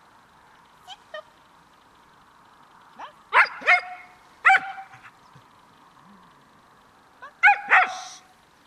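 A dog giving short, high yelping barks: two faint ones about a second in, then a loud pair, another a second later, and a loud pair near the end. It is the excited, unwanted vocalizing that the obedience training is meant to get rid of.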